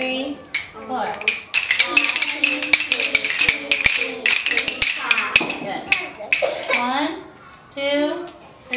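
A class of young children tapping wooden rhythm sticks together, a ragged cluster of many overlapping clicks lasting about four seconds from a second or so in.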